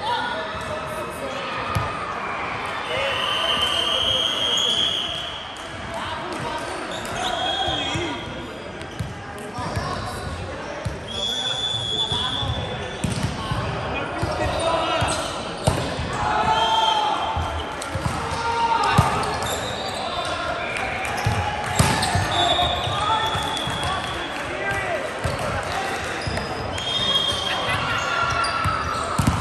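Indoor volleyball game in a large, echoing hall: players calling out to each other, a volleyball struck and bounced on the wooden court with several sharp thuds, the loudest about two-thirds of the way through.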